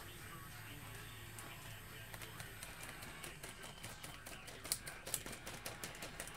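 Faint, irregular light clicks and taps of hands handling a trading card and its plastic bag on a desk.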